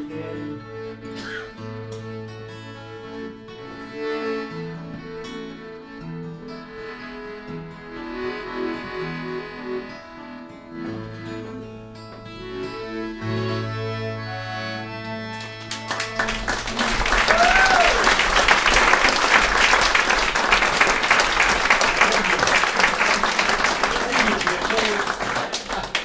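Acoustic guitar and melodica playing the instrumental close of a folk song, with low held notes under the melody. About sixteen seconds in the music stops and the audience applauds loudly, with one short high call early in the applause.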